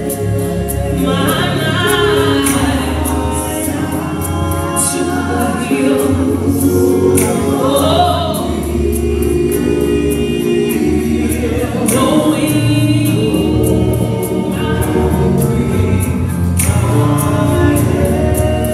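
Live gospel singing by a small vocal ensemble of several voices, backed by a band with drum kit and keyboard. Sustained low notes sit under the voices, and cymbals strike throughout.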